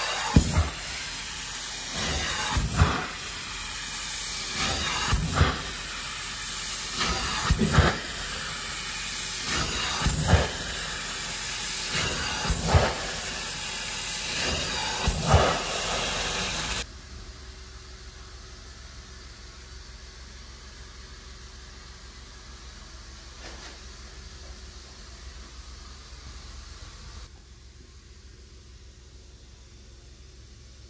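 Hot-water carpet extraction stair tool working a carpeted stair: a loud steady suction hiss that surges about every two and a half seconds as each stroke is made. About 17 seconds in it cuts off abruptly to a much quieter steady background.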